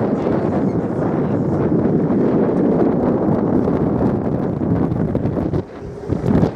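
Wind buffeting the microphone on an open boat deck: a steady, dense rushing noise, dipping briefly about five and a half seconds in.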